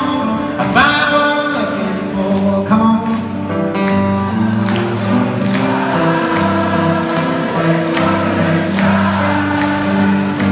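A song performed live on strummed acoustic guitar with singing, in a steady rhythm, heard from far back in a large, echoing hall.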